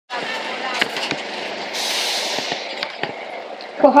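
Busy city-square background: a steady wash of traffic and distant voices, broken by several sharp clicks and a short hiss about two seconds in.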